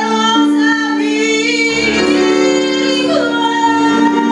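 A woman singing a slow melody into a microphone, holding long notes that waver slightly and glide between pitches. Sustained keyboard chords accompany her.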